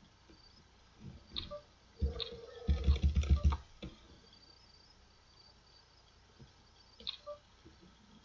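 Online poker client sound effects as the bets go into the pot and the flop is dealt: a quick run of low knocks and clicks about two to three and a half seconds in, with a short steady tone at its start. Scattered lighter clicks come before it and again near the end.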